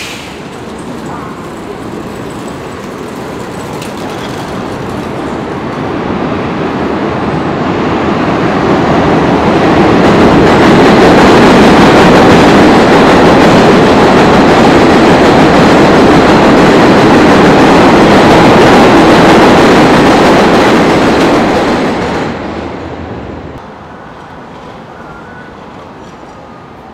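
An elevated 7 subway train passing on the steel el structure, heard from the street directly beneath: a heavy rumble builds over about ten seconds, stays very loud for about ten more, then dies away sharply near the end.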